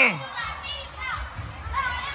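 Children's voices in a large indoor play space: a shouted phrase trails off at the start, then faint background chatter over a low rumble.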